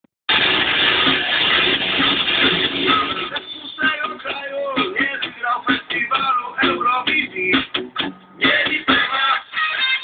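Music playing, with a voice over it from about three seconds in.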